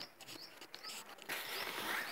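Frangipani leaves rustling and brushing against the phone as it is pushed into the foliage, loudest in the second half. A short high chirp repeats about every half second in the background.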